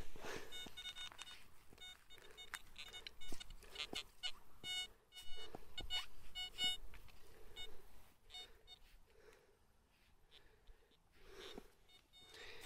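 Metal detector sounding a rapid string of short beeps as its coil is passed over a target in freshly dug soil, with scraping and crunching of soil clods between them. The beeps stop about seven seconds in.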